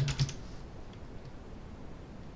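A few computer keyboard keystrokes right at the start, a single faint one about a second in, then only steady background noise as the typing stops.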